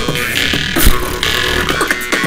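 Two jaw harps (vargans) playing a steady drone together over live beatboxing: rhythmic vocal drum hits, with a heavy kick a little before the middle.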